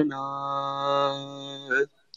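A man singing a ghazal without accompaniment, holding one long steady note on the word 'na'. The note ends just before two seconds in with a short breath.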